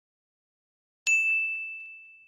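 One bright electronic bell ding, a notification-bell sound effect, about a second in: a sharp strike that rings out on a single high tone and fades away.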